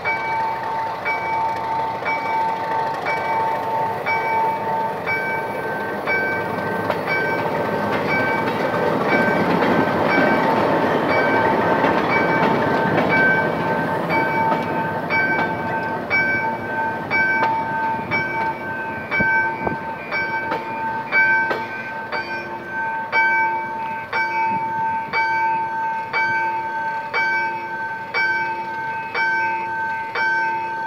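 Level-crossing warning bell ringing steadily at about two strokes a second, while an ALCo DL535 diesel locomotive and the coach it hauls roll slowly past. The engine and wheel noise is loudest around the middle and then fades as the bell carries on.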